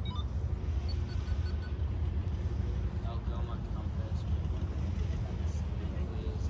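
A steady low rumble with faint voices now and then.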